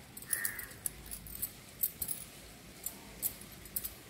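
Faint, light clinks, about a dozen scattered over a few seconds, from bangles jingling on a wrist as the hand moves a cloth.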